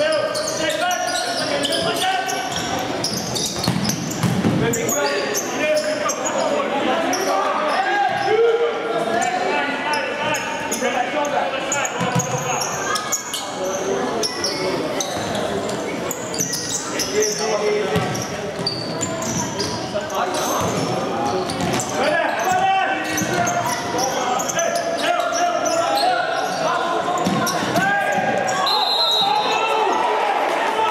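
Futsal ball being kicked and bouncing on a wooden indoor court, in a steady run of sharp knocks, with players' and spectators' shouts echoing around a large sports hall.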